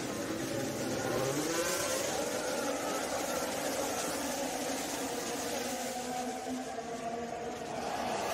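A full field of Formula 1 cars, each with a 1.6-litre turbocharged V6 hybrid engine, accelerating hard from a standing start, many engine notes overlapping and climbing in pitch as they pull away.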